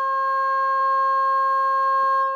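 A 1943 HP 200A audio oscillator sounding a steady, loud mid-pitched tone through a small speaker. The output is turned up near its maximum, where the wave starts to distort, so the tone carries clear overtones rather than being a pure sine.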